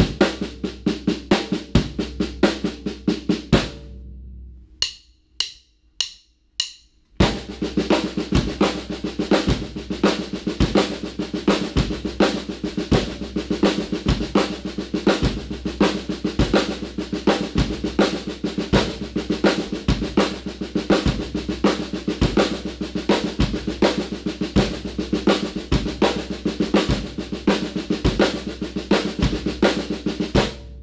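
Snare drum played in continuous sixteenth notes with a five-stroke grouping (right, left, left, right, right) over a steady bass drum on half notes, a five-against-four polymeter. The playing stops about four seconds in, four stick clicks count it back in, and the pattern starts again about seven seconds in.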